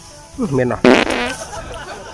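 A man coughs once, sharply, about a second in, right after a few spoken words.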